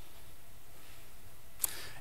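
Steady, faint hall room tone in a pause between speech, with a single short click about three-quarters of the way through.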